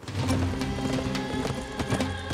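Background music with held low notes over a rapid run of hoofbeats from a herd of galloping horses.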